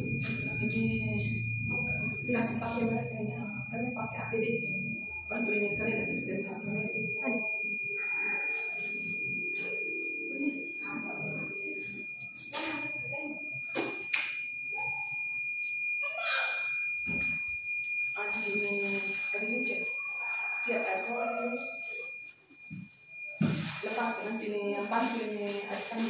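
Indistinct voices in a room over a steady high-pitched electronic tone that holds unbroken throughout, with a few sharp clicks. Near the end the voices drop away briefly.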